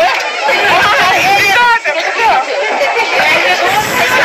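Several people talking at once in lively chatter, voices overlapping so no single speaker stands out.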